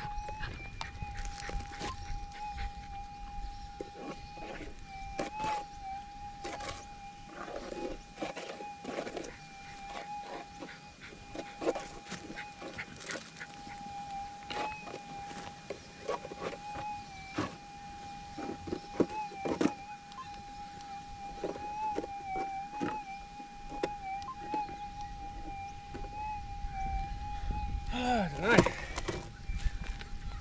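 Minelab GPX 6000 gold detector's steady threshold tone with small wobbles as the coil is swept over hot, ironstone-rich ground: the warbles are ground noise, not a target signal. Scattered light clicks and scuffs run under it.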